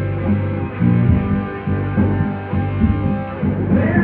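Live rock band playing an instrumental passage: electric guitar and bass guitar over drums, with a steady rhythmic low end.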